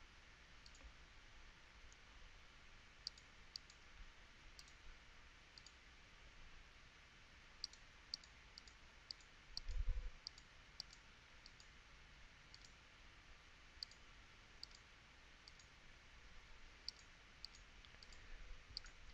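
Computer mouse clicking at uneven intervals, about one short, sharp click a second, as keys on an on-screen calculator are clicked. A dull low thump comes about ten seconds in.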